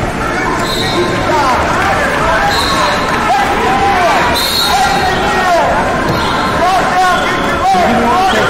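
Many overlapping voices shouting at once in a large gym hall, coaches and spectators yelling during a youth wrestling bout, with a few short high squeaks and a thump near the end.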